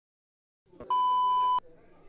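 A single steady electronic beep, about two-thirds of a second long and cutting off suddenly, over faint room sound.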